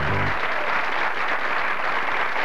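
Studio audience applauding steadily, with some laughter. The last notes of a piece of music stop about half a second in.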